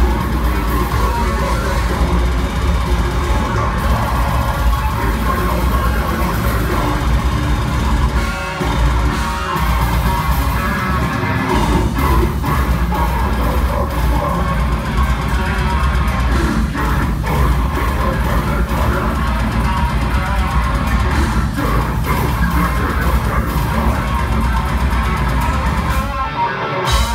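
Technical deathcore band playing live at full volume: heavily distorted guitars, bass and fast drums in a dense, continuous wall of sound, heard from within the audience.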